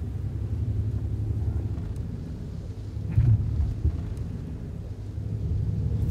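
Steady low rumble of a car heard from inside the cabin, with a louder swell about three seconds in.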